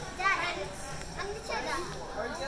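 Indistinct voices of children talking and calling out, with no clear words.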